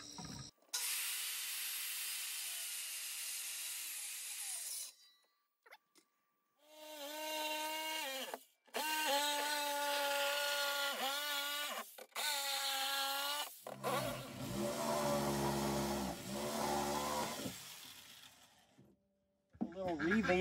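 Corded circular saw cutting through a wooden bracing board for about four seconds. After a short gap, a power drill runs in several bursts, its pitch sagging and recovering as it drives into wood. The last burst is lower in pitch.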